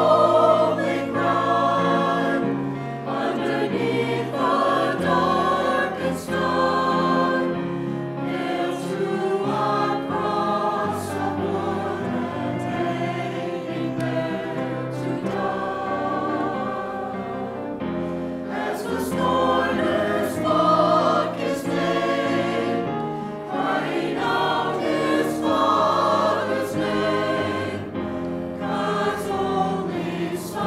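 Mixed choir of men's and women's voices singing a sacred choral piece in sustained phrases.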